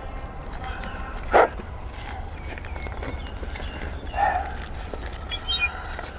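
Two short animal calls, a sharp one about a second and a half in and a softer one around four seconds, over a steady low rumble.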